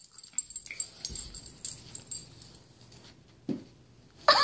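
Two dogs, a puppy and an adult bulldog, play-fighting on carpet: faint scuffling and dog breathing and snuffling, with one short low sound about three and a half seconds in.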